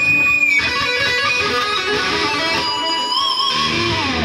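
Electric guitar played solo: a lead line of sustained single notes. It opens on a held high note and ends with notes shaken in vibrato.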